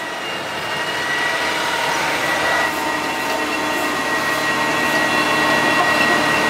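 John Deere four-track tractor pulling a trailed sprayer, its engine and tracks growing steadily louder as it approaches, with a steady high-pitched whine throughout.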